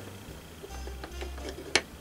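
Wooden puzzle blocks being pushed and fitted into a wooden frame: faint knocks and rubbing, then one sharp wooden click a little before the end as the last piece goes in.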